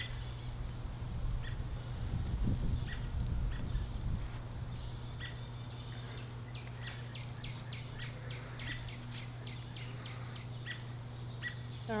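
Songbirds calling outdoors: a short falling trill about five seconds in, then a quick run of about a dozen high chirps, two or three a second, over a steady low hum. There is a brief low rumble two to four seconds in.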